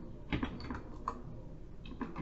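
Computer keyboard typing: a run of short, irregularly spaced keystrokes as code is entered.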